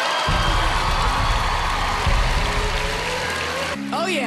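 Background music with a heavy bass that comes in just after the start and stops shortly before the end, over an audience cheering and applauding.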